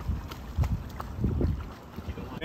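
An iguana thrashing in canal water on the end of a catch pole's line, splashing in three surges, with wind buffeting the microphone.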